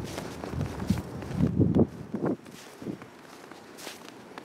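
Footsteps of the person filming, walking on a thinly snow-covered driveway and yard: a run of low, irregular thuds, loudest about a second and a half in, then fainter steps.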